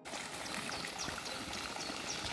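Water from a park sculpture fountain splashing and trickling into its pond, a steady, even rush.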